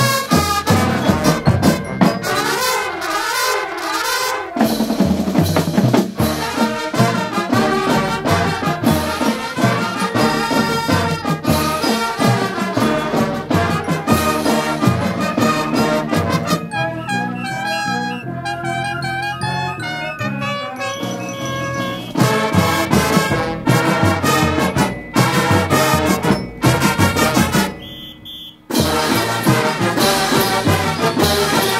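High school marching band playing, brass to the fore, from a 1982 LP recording. It eases into a softer passage about two-thirds through, then drops off briefly near the end before the full band comes back in.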